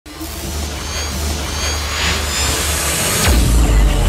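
Cinematic intro music with sound effects: a swelling whoosh builds up, then a falling sweep and a deep bass boom hit a little past three seconds in.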